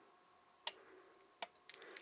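Plastic squeeze bottle of dimensional glue being squeezed over a bottle cap as the glue runs low: a few short squishy clicks, two about three-quarters of a second apart, then several more near the end, over faint room tone.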